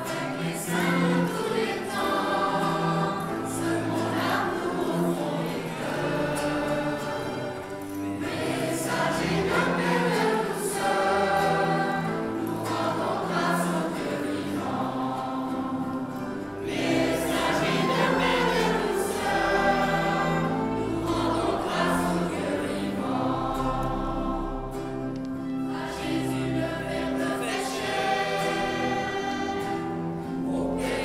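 Children's choir singing in unison phrases, accompanied by a nylon-string classical guitar, violin and a bowed cello holding low notes.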